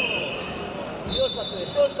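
A man shouting instructions to a wrestler in a large, echoing hall. Under the shouts run two long steady high tones, one after the other, and there is a dull thud about a second in.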